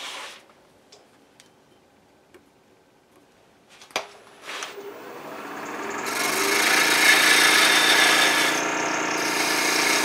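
Wood lathe spinning a freshly cut green apple branch while a skew chisel cuts into its end. The first half is quiet apart from a few light clicks. From about halfway a scraping cutting noise builds up over the lathe's steady hum and stays loud.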